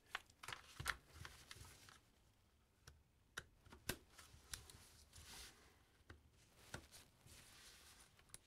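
Faint scattered clicks, taps and rustles of plastic Hot Wheels toy track pieces being handled and fitted together on a carpet.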